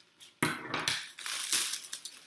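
A sheet of cellophane crinkling as it is handled and pressed down into a box, in a run of loud crackling bursts that begins about half a second in.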